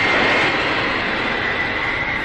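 Steam locomotive venting steam at the cylinders: a loud, steady hiss with a thin, high, whistling tone in it.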